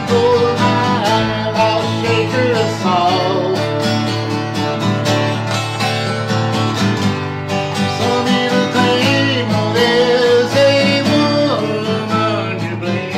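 Steel-string acoustic guitar strummed in a steady rhythm, playing a country-style tune.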